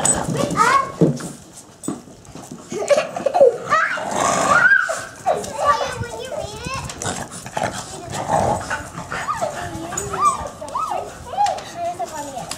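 A dog whining and yipping in short rising and falling cries, mixed with children's voices.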